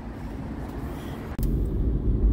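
Faint outdoor background noise for about the first second and a half, then an abrupt switch to the steady low rumble of a car running, heard from inside the cabin.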